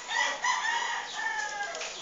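A rooster crowing once: one long, pitched call of about a second and a half that falls away at the end.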